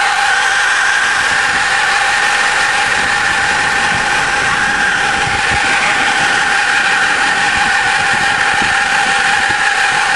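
School bus engine idling, its exhaust blowing out of a crushed, dirt-packed tailpipe with a steady high whistle. The tailpipe was flattened when the bus scraped up the hill.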